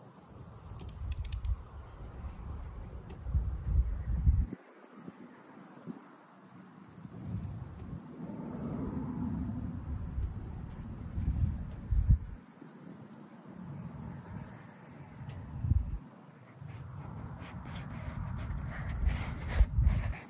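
Wind buffeting the microphone in gusts: a low rumble that swells and drops away several times, with a few clicks near the end.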